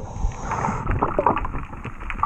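Muffled rush of water heard through a submerged camera, with scattered small clicks.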